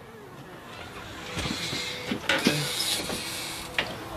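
A glass storm door being opened, its latch and frame giving a few sharp clicks and knocks, over a rising rush of outdoor noise.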